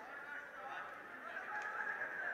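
Faint raised voices calling out in a large sports arena, echoing off the hall.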